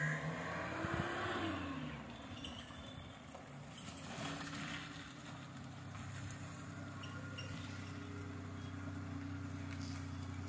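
A vehicle goes by with a pitch that rises and then falls in the first couple of seconds. After that an engine runs steadily at idle.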